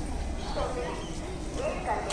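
Indistinct talking of people in the background over a steady low rumble.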